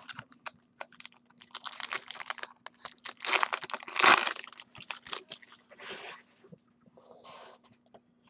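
A foil trading-card pack being torn open and crinkled by hand: a run of crackling tears and crumples, loudest about three to four seconds in.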